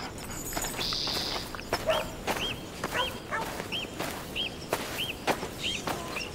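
A bird calling a short rising-and-falling chirp over and over, about two a second, starting about two seconds in, over soft scuffing and footsteps in a farmyard.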